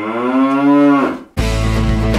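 A long cow moo, rising in pitch and then falling, that cuts off suddenly a little over a second in. Music with a steady beat starts right after.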